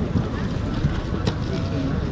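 Low, steady rumble of wind on the microphone over the faint murmur of a crowd's voices, with a few small clicks.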